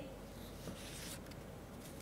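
Faint steady background hiss with a few soft ticks.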